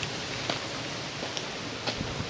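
Steady outdoor background hiss with a few faint clicks, the open-air noise of a handheld camera's microphone.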